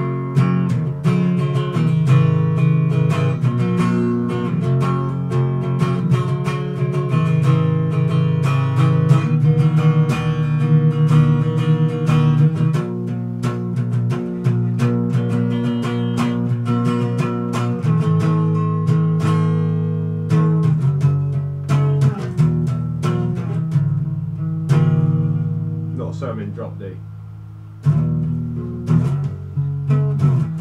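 Electric guitar with an EMG 85 active neck pickup, played clean through a Marshall MG15 amp: a run of picked single notes and chords in drop D tuning. Near the end a chord is left to ring and fade, then the picking starts again.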